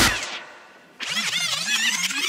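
Breakcore track breakdown: the drums and bass cut out at once and a tail fades away, then about a second in a sampled sound with a wavering, bending pitch comes in on its own.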